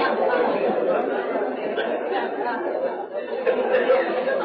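Audience chatter in a large hall: many voices talking at once with scattered laughter, the crowd still buzzing after a joke's punchline.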